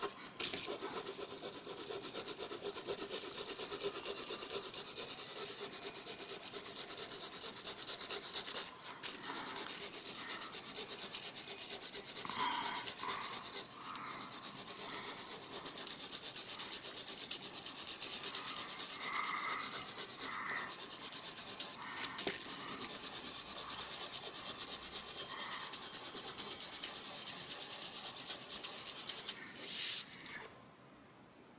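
Coloured pencil scratching on paper in fast, steady back-and-forth shading strokes, breaking off briefly a few times and stopping near the end.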